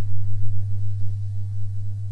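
A steady low hum, loud in a gap between words, with a faint higher tone briefly in the middle.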